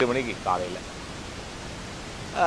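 A man's voice speaking for under a second, then a pause filled only by a steady background hiss.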